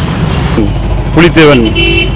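A man's voice speaking briefly into press microphones over a steady low rumble of road traffic engines.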